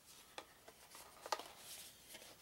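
Faint handling of a folded paper game board being opened out: soft paper sounds with a couple of light clicks, one about half a second in and one a little past the middle.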